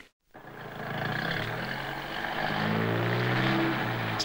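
Car engine running, its pitch rising as the car accelerates and then holding steady, after a brief silence at the start.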